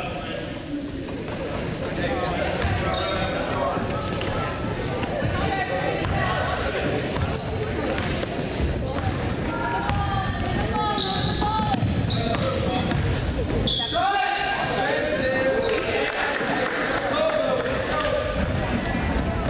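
Basketball dribbled on a hardwood gym floor, with many short high squeaks of sneakers on the court and spectators and players calling out.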